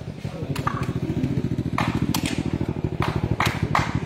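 A small engine idling with a rapid, even pulse, and several sharp pops of a sepak takraw ball being kicked back and forth, starting about two seconds in.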